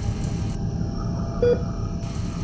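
A short mid-pitched electronic beep repeating about every second and a half over a steady low rumble, one beep falling about one and a half seconds in.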